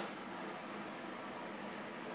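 Steady faint hiss of room tone, with no distinct sound event.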